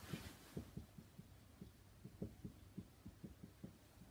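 Marker pen writing on a whiteboard: a quick, even run of faint short strokes and taps, about four or five a second, as block letters are drawn.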